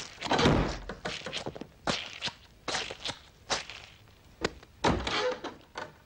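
Sound effects of clay body parts moving over a wooden floor: a string of short wet slaps and knocks a few tenths of a second apart, with a heavier thud about half a second in and another around five seconds.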